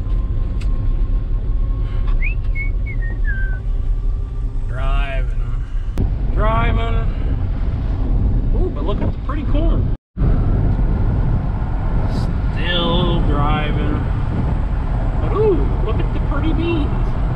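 Vehicle driving on the road, heard from inside the cab as a steady low rumble, with a short falling whistle-like tone about two seconds in; the sound drops out briefly about ten seconds in, then the rumble resumes.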